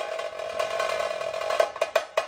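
Chatal band drums (slung side drums, a frame drum and a bass drum) playing a quieter passage of fast, light strokes over a steady ringing tone, then quick sharp hits near the end.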